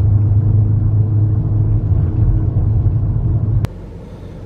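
Loud, steady low rumble of a car driving, heard from inside the cabin. It cuts off suddenly with a click near the end.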